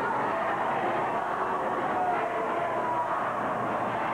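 Arena crowd noise: a steady din of many voices, with a few scattered shouts a couple of seconds in.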